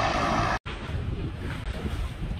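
Steady wind noise on the microphone mixed with a low engine rumble. It cuts off abruptly about half a second in, and quieter wind noise follows.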